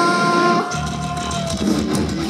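Live heavy band music: electric guitars hold a sustained chord, and the bass and drums come back in under a second in.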